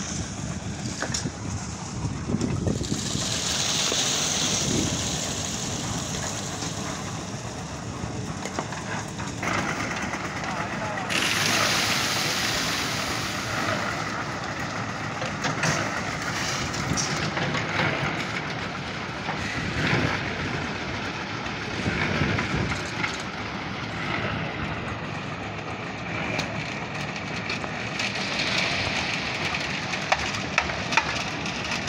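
A concrete mixer running steadily, with workers' voices over it.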